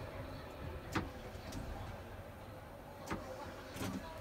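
Low steady rumble and hum of a Class 319 electric train at the platform, with a faint steady tone over it. There are two sharp clicks, one about a second in and one near three seconds.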